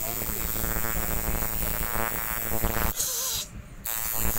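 Tattoo machine running with a steady electric buzz, which stops about three seconds in; bursts of hiss follow.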